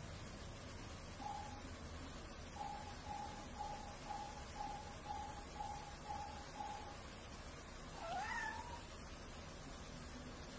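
Cat mewing: a string of short, evenly spaced mews at the same pitch, about two a second, then one longer rising meow near the end.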